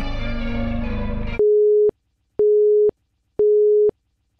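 A short stretch of outro music ends about a second and a half in, then three half-second beeps of a single steady electronic tone follow, about a second apart, like a telephone busy signal.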